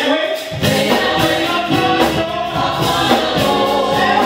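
Live gospel singing: a male lead voice sings into a microphone with choir-style backing voices and instrumental accompaniment.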